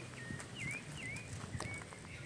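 A small bird chirping: short dipping calls repeated about every half second, faint, over light crunching steps on gravel.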